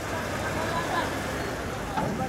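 Bus engine running as the coach creeps slowly forward onto the ferry pontoon, under a background of people's voices.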